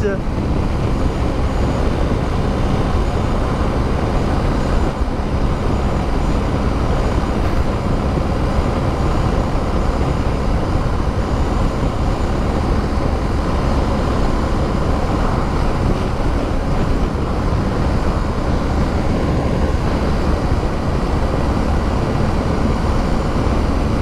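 BMW R1250 GS Adventure's boxer twin running steadily in fifth gear at highway speed under a steady rush of wind, the bike gently gaining speed from about 96 to 111 km/h.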